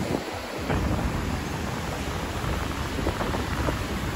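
Strong wind buffeting the microphone in a steady low rumble, over the wash of breaking ocean surf.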